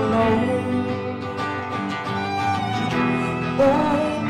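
Live folk band playing an instrumental break: a fiddle carries a sliding melody over a strummed acoustic guitar.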